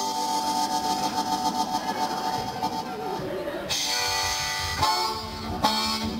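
Blues harmonica played as a train imitation: a held, wavering chord at first, notes bent downward around the middle, then a brighter chord breaking in just before the second half.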